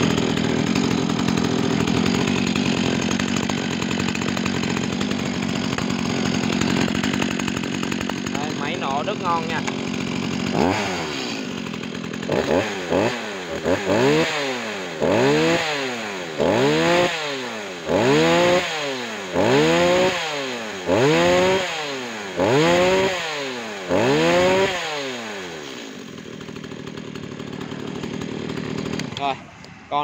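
Stihl MS 210 C two-stroke chainsaw running well on test: a steady idle for about ten seconds, then revved about ten times in quick blips, each rising and falling in pitch roughly every second and a half, before settling back to idle near the end.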